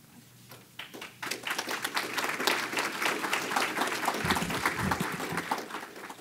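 Audience applauding. The clapping starts about a second in and dies away near the end.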